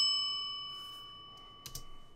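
A single bright bell-like ding, struck just before and ringing out, its several tones fading steadily away over about a second and a half. A couple of faint clicks come near the end.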